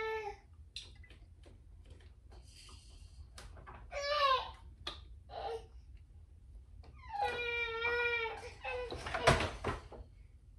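An animal crying out off camera: a short rising-and-falling call about four seconds in, then a longer wavering call held for over a second, with light clicks of handling in between and a sharp knock near the end.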